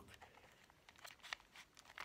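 Faint, scattered clicks of a plastic Rubik's cube as its layers are twisted by hand, several small snaps over the two seconds.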